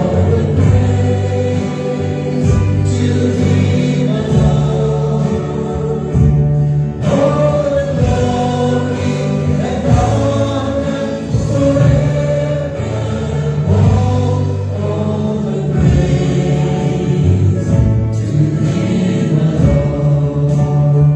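Live church worship music: voices singing a praise song together over a band with a held bass line that changes note every couple of seconds.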